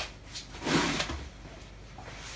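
Off-camera handling noise as a rag is fetched: a sharp click at the very start, then a short scraping rustle about a second in.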